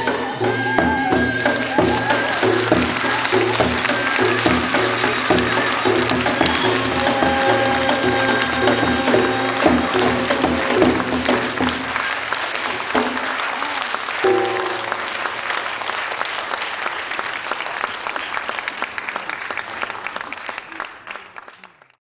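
Korean traditional dance accompaniment, wind melody over a steady drum rhythm, plays its closing phrases while an audience applauds. The music stops about halfway through, the applause goes on and fades out near the end.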